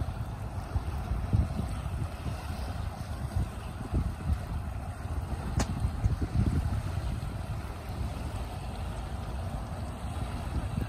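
Wind buffeting the microphone in uneven low gusts over a steady outdoor hiss, with one sharp click about halfway through.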